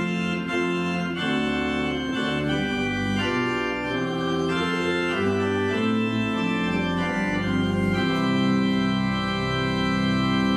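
Church organ playing slow, sustained chords over a deep bass line, the harmony changing every second or so.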